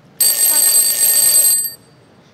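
An electronic buzzer sounds once, a loud, shrill, steady tone lasting about a second and a half before cutting off.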